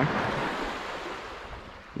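Shallow sea water washing over a pebble shore close to the microphone: a rush of water that starts loud and fades away over about two seconds.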